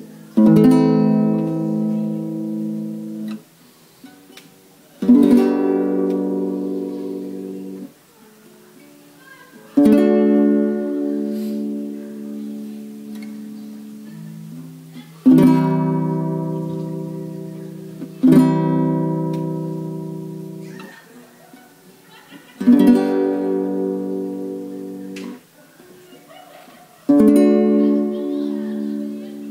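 Nylon-string classical guitar strumming single chords of the Am–G–D–C progression, about seven in all, each struck once and left to ring and fade for a few seconds before the next.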